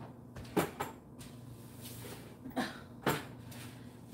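Three short knocks from someone cleaning up shattered glass in a kitchen: one about half a second in, then two close together near the end, over a low steady hum.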